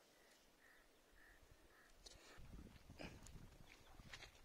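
Near silence: faint open-air ambience, with a few soft, faint calls in the first half and a low rumble with a couple of soft clicks in the second half.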